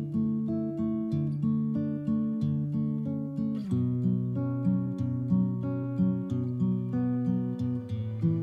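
Nylon-string classical guitar fingerpicking a steady, repeating arpeggio of single notes, about two a second, moving to a new chord about three and a half seconds in.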